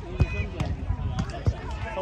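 Volleyball struck by hand, with a sharp smack about a quarter of a second in and another about a second and a half in, over the chatter of voices.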